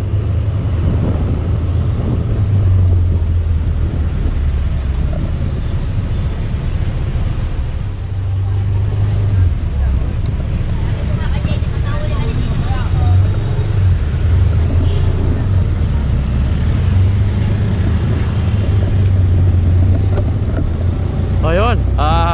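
Steady, fluctuating low rumble of wind buffeting the microphone of a moving rider, mixed with city road traffic.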